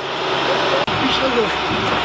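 People talking indistinctly over steady street background noise, with a brief dropout a little under a second in.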